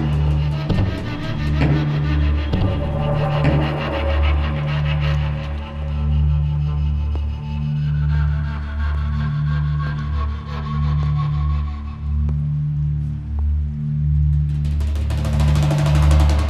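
Background score music: a low drum-like pulse repeating about every second and a quarter under held higher tones.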